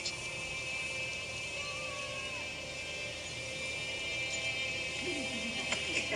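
Soft, sustained background music from a TV drama's soundtrack, heard through a television's speaker.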